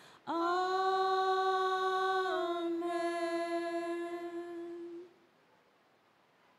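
Women's voices singing a cappella: one long held note, starting just after a brief break, that ends about five seconds in.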